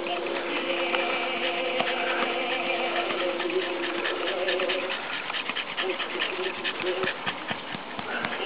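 A dog howling: one long, steady note for about the first four seconds, then shorter broken calls mixed with quick, rhythmic breathing.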